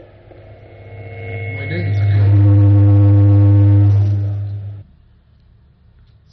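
Loud electrical mains hum on the audio feed: a low steady buzz that swells in over about a second, holds, then cuts off abruptly near the five-second mark, with a brief click at the very start.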